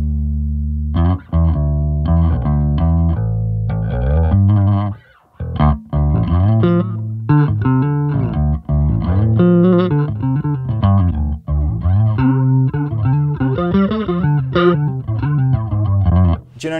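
Electric bass played through a Boss Dual Cube Bass LX combo amp with its chorus effect on. It opens on a held low note, breaks off briefly about five seconds in, then moves into a busier line of plucked notes.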